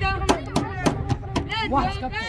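Several voices of football spectators and players shouting and calling over one another, with a few sharp impacts in quick succession.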